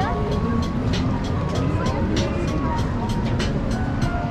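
Busy city street ambience: people talking in the background and traffic rumbling, with music mixed in. Frequent short clicks and knocks run throughout.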